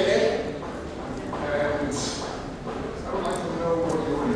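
Speech echoing in a large hall, no other sound standing out.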